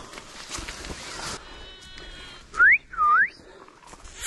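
Footsteps crunching and brushing through dry bushes and grass, then two short, loud calls that each sweep rapidly upward in pitch.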